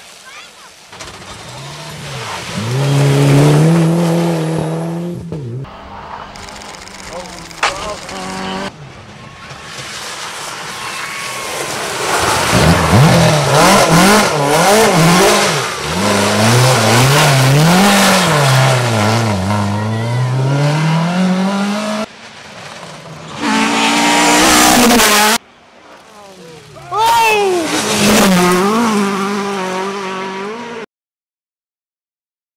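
Rally cars driven flat out past the spectators, their engines revving hard, with the pitch climbing and dropping again and again through gear changes and throttle lifts. A long run in the middle is a Ford Escort Mk2. The sound breaks off abruptly several times as one car gives way to the next.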